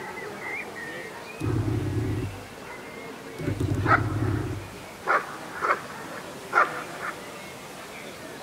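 A dog growling twice, each growl about a second long, while gripping a helper's protection sleeve. This is followed by four short, sharp sounds.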